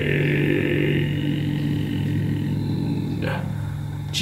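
Final acoustic guitar chord ringing out after the song ends, its low notes held and slowly fading, with a short faint noise about three seconds in.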